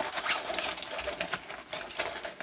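Hands rummaging in a waxed-canvas roll pouch: quick, irregular rustling of the stiff canvas and crinkling of a wrapped item being drawn out.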